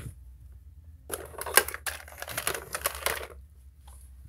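Plastic toys being handled and knocked together: a rapid, irregular run of small clicks and rattles lasting about two seconds, starting about a second in, over a low handling rumble.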